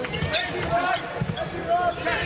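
Basketball being dribbled on a hardwood court, a series of short bounces.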